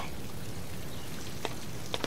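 Steady soft background hiss of the scene's ambience, with two faint ticks about one and a half seconds in and near the end.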